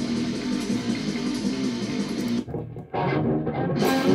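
Jackson electric guitar playing a metal riff, with a short break a little past halfway before the riff picks up again.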